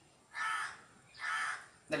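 A crow cawing twice, two harsh calls of about half a second each, separated by a short gap.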